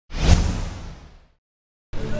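Whoosh sound effect with a low hit in it, the kind used for a logo animation, dying away within about a second. After a short silence, music starts just before the end.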